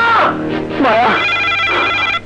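Desk telephone ringing with a steady warbling electronic ring that starts about halfway through, after a voice in the first second.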